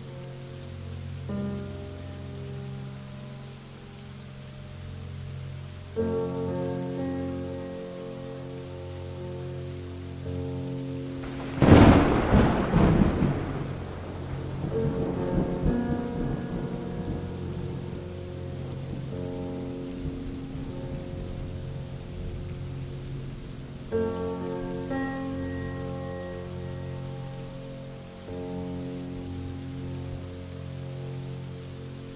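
Slow instrumental music with long held notes over steady rainfall. About twelve seconds in, a sudden loud thunderclap breaks out and rumbles away over the next few seconds.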